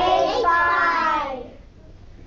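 A group of children answering in unison with one drawn-out, sing-song call of a chessboard square's name, lasting about a second and a half before dying away.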